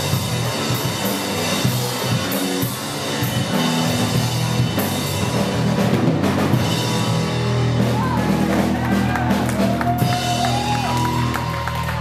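Street punk band playing live, loud and distorted, with the drum kit hitting hard; about seven seconds in the drumming stops and the last chord is left ringing as the song ends.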